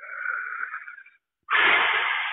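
A man breathing heavily into a close microphone: two long, breathy rushes of air, the second louder and fuller, about a second and a half in.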